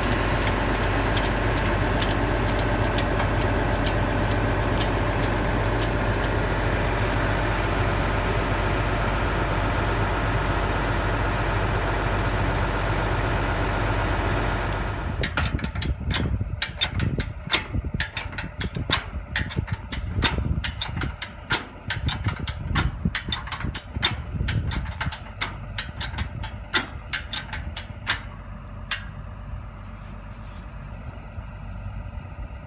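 A diesel New Holland tractor engine idling steadily close by. About halfway through it gives way to many sharp, irregular metal clicks and clanks as a ratcheting farm jack is worked on a pivot tower leg.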